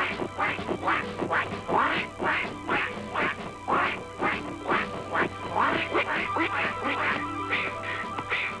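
Cartoon ducks quacking in a steady marching cadence, a quack every half second or so, over orchestral cartoon music.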